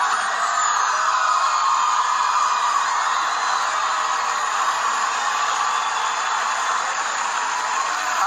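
A large audience cheering and screaming without a break, a steady wash of crowd noise.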